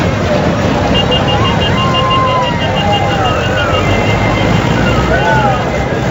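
A crowd of men shouting and cheering over the running engine of a passing tractor. A rapid, evenly pulsing high tone sounds from about one second to four seconds in.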